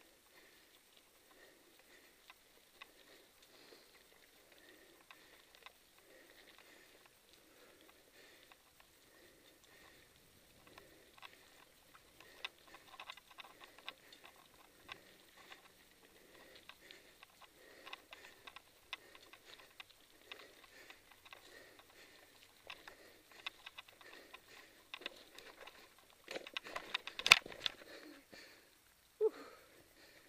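Mountain bike rolling down a dirt trail: the tyres crackle over dry leaves and grit, with a steady run of small clicks and rattles from the bike. It gets busier about halfway through, and there is one loud knock near the end.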